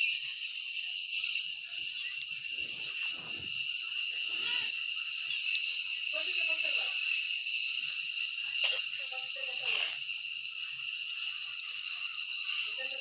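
A jumble of many video soundtracks playing over each other at once, heard as a steady high-pitched hiss with short voice-like fragments breaking through now and then.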